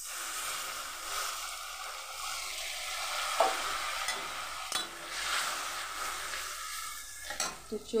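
Masala paste sizzling in a hot metal wok with a little water just added, while a flat metal spatula stirs and scrapes it. A few sharp clicks sound as the spatula knocks the pan.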